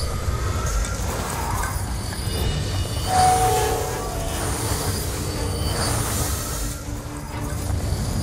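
Dramatic sound effects: a deep, continuous rumble overlaid with shrill, metallic screeching tones, swelling to a louder held screech about three seconds in.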